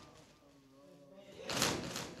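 A group of mourners slapping their chests in unison with open palms (sineh-zani): one loud, echoing slap about one and a half seconds in, with a faint male voice before it.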